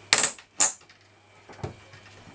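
Two sharp metallic clinks in quick succession, then a fainter knock about a second and a half in: a steel pry bar working a wooden skirting board off the base of a wall.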